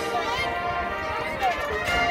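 High school marching band holding a sustained chord on brass and woodwinds, with spectators' voices calling out over it.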